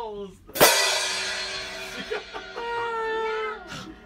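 A loud final chord crashed out on the upright piano about half a second in, ringing and slowly dying away over about three seconds, with a voice holding a note near the end. It is the close of a song.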